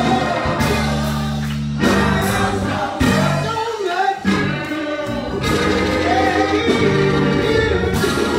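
Live gospel music: a church praise team singing with a band, over held low bass notes.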